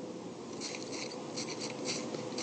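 Pen scratching out handwriting in a series of short strokes that get busier after about half a second.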